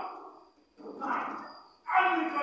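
A person's voice from the stage: one utterance trails off, then about a second in comes a short call that swells and fades.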